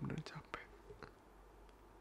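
A man's soft, whispered voice close to the microphone, ending about half a second in, then faint room tone with a small click about a second in.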